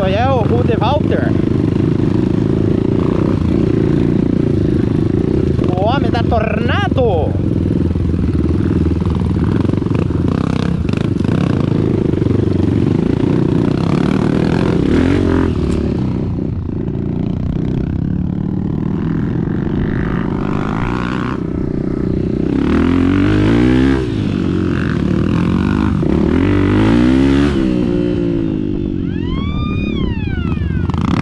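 Trail motorcycle engine running under load, its revs rising and falling, over a heavy rumble of wind on the microphone. Late on, the revs swing up and down several times in quick succession.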